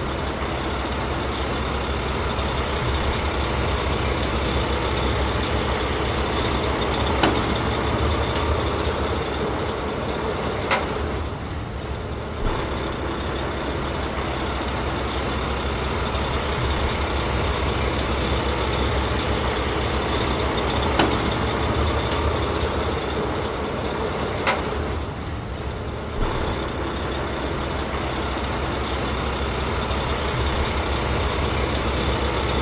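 Steady truck engine running, a looped sound effect that repeats about every 14 seconds, with a faint click now and then.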